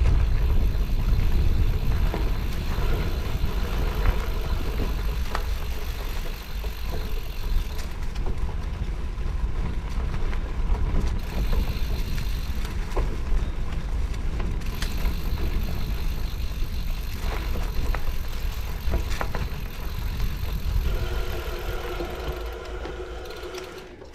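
Mountain bike riding fast down a dirt forest trail, heard from the bike: a heavy low rumble of wind and knobby tyres over dirt, with clicks and rattles from the bike. Near the end the rumble drops away as the ride slows and a steady whine comes in.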